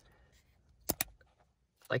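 Orange airbag connector snapping home on the steering-wheel airbag module: two sharp clicks in quick succession about a second in, the latch seating fully.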